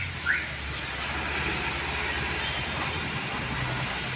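Motorcycle engine idling, a steady low hum.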